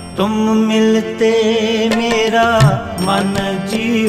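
Gurbani shabad kirtan music: a wavering melodic line over a steady low note.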